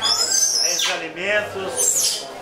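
Indistinct voices of several people talking, with a high falling sweep about halfway through.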